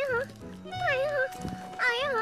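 A child's high voice asking "Cái này hả?" ("This one?") again and again, about once a second, looped as a comic refrain over light background music. A single soft thump comes about one and a half seconds in.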